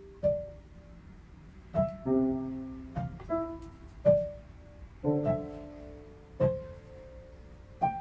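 Slow, sparse piano music: single notes and soft chords struck about once a second, each left to ring and fade before the next.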